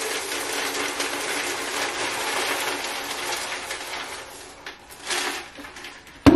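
Dry cereal poured into a clear plastic storage container, a steady rattling pour that thins out about four and a half seconds in, followed by a short extra rattle near five seconds.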